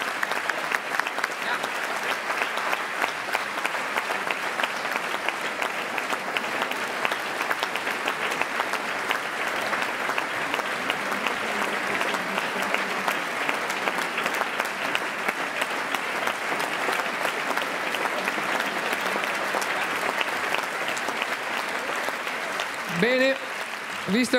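Theatre audience applauding: sustained, dense clapping at an even level throughout. A man's voice comes in about a second before the end.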